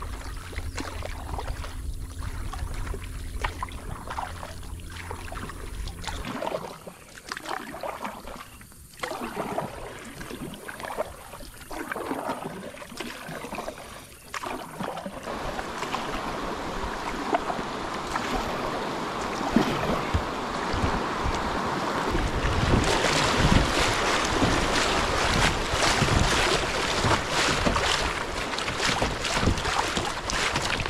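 Kayak paddle strokes and water lapping on a calm river, then rushing, choppy river water splashing against the kayak hull, growing louder over the second half as the current picks up, with some wind on the microphone.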